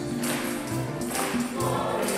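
A church choir and congregation singing a gospel-style Gospel acclamation, with a shaken percussion instrument marking a steady beat, a little under a beat and a half a second.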